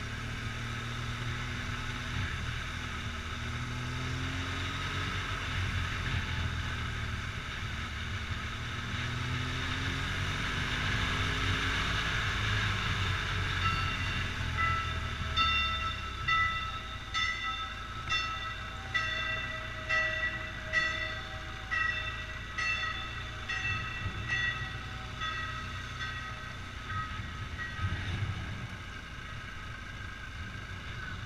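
Motorcycle engine running at low speed with wind noise on the microphone. From about halfway, a ringing tone repeats a little over once a second for about a dozen seconds, then stops shortly before the end.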